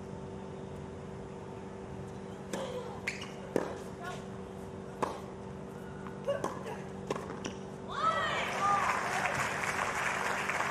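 Tennis ball struck by racquets and bouncing on a hard court during a doubles rally: sharp hits roughly every half second to a second, from about two and a half seconds in. About eight seconds in, the crowd breaks into applause and cheers as the point ends.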